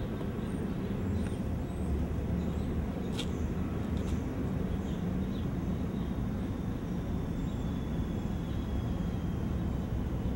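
Steady low rumble of background noise with a faint hum, and a faint high whine that slowly falls in pitch through the middle.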